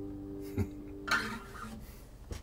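The final chord of an acoustic guitar ringing out and fading away. A soft knock comes about half a second in, and a brief rustle of handling noise about a second in.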